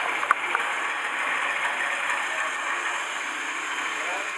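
Steady background noise of a crowded room, with two sharp clicks about a third of a second and about half a second in.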